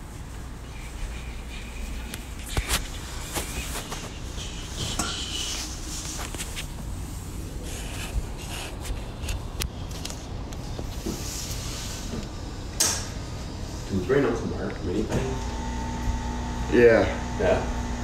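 Scattered light knocks and clicks over a steady low hum, as from a phone being handled and moved. Short bits of low voice come in near the end.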